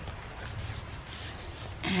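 Rustling and rubbing of paper as hands move the pages and a tucked-in card of a handmade junk journal.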